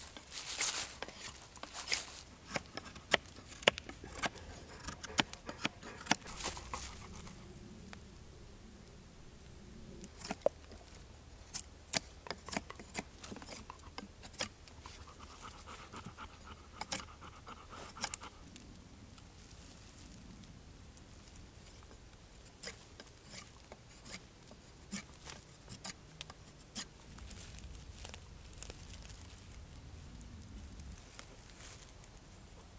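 Knife blade scraping and shaving wood from the limbs of a green hazel self-bow to tiller it: a run of sharp, irregular scrapes, thickest in the first few seconds and sparser after.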